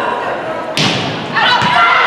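One sharp smack of a volleyball being struck, ringing through a gymnasium, about three-quarters of a second in. About half a second later, players and spectators start shouting and cheering as the rally ends.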